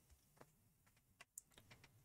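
Near silence with a few faint, scattered clicks at the computer as the video is set playing.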